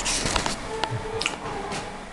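A few short, sharp clicks, about four over two seconds, over faint background music.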